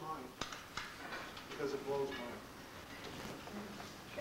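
Quiet talking, with two sharp clicks in the first second.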